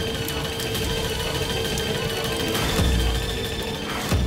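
Dramatic television background score: a steady held drone with a deep low boom about three seconds in.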